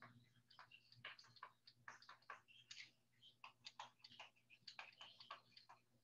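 Faint, irregular tapping and clicking of a stylus writing on a graphics tablet, several strokes a second, over a faint steady low hum.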